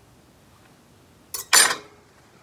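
Quiet room for over a second, then a click and a short clatter as the utensil used to free air bubbles from a jar of pasta sauce is set down on the counter.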